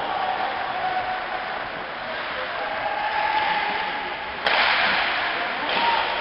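Ice hockey game in an indoor rink: skating and play on the ice with scattered shouts from players and spectators, then a sudden loud burst of noise about four and a half seconds in that lasts about a second.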